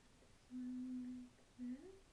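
A young woman humming two notes with her mouth closed: one long, steady note, then a short one that slides up in pitch near the end.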